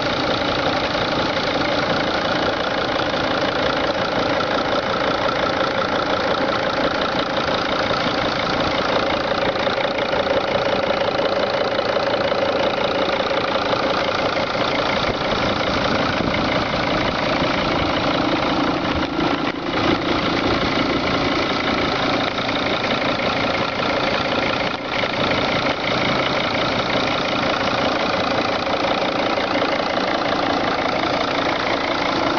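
The 2003 Dodge Sprinter's five-cylinder turbodiesel engine idling steadily with the usual diesel clatter, heard up close from the open engine bay.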